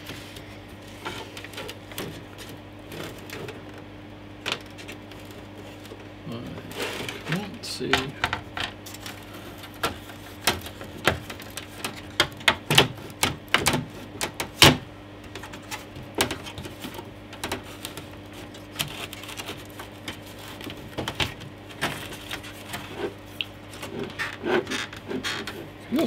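Plastic and metal clicks, taps and knocks of an Amiga 500 Plus motherboard being handled and worked loose from its plastic case. The clicks come thickest from about six to sixteen seconds in, with one sharp knock near the middle, over a steady low hum.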